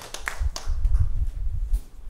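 Applause dying away to a few scattered claps, over low bumping and rumble from handheld microphones being handled. The sound fades near the end.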